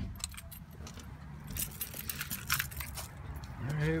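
Car keys jangling, with scattered light clicks and knocks of handling; the van's engine is switched off.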